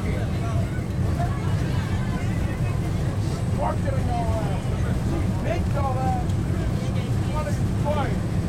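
MBTA Red Line subway train running at speed, heard from inside the car as a steady low rumble, with faint passenger voices over it.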